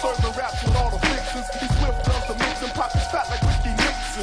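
Hip hop track: rapping over a drum beat with deep bass kicks and a held synth note.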